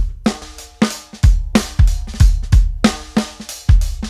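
A soloed multitrack recording of an acoustic drum kit playing a steady beat, with kick drum, snare, hi-hat and cymbals. It is heard with the Lindell 80 Neve-style channel strip and bus plugins switched in on the drums.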